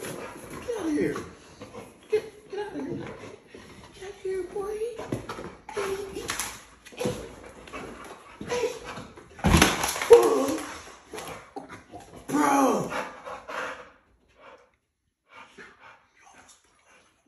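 Two excited pit bull–type dogs whining and grumbling, with a single loud thump about nine and a half seconds in.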